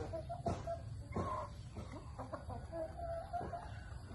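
Chickens clucking, a string of short clucks with a few drawn-out calls, over a steady low rumble.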